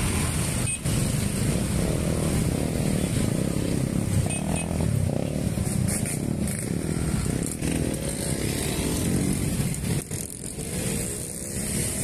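Many motorcycles and small motor scooters riding past together in a dense convoy, their engines running in a continuous mass.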